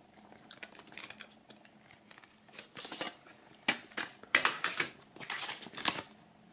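A folded paper CD booklet is pulled from a plastic jewel case and unfolded by hand: faint small clicks at first, then several bursts of paper rustling in the second half, the loudest near the end.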